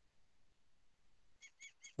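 Near silence, then three short, faint, high chirps near the end: a bird calling.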